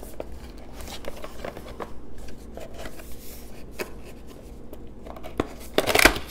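A cardboard toy box being handled and pried open by hand: scattered light clicks and rustles of cardboard and packaging, busier and louder near the end.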